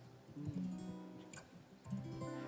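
Soft acoustic guitar playing a few strummed chords as a song's introduction, with one chord about half a second in and another a little before the end.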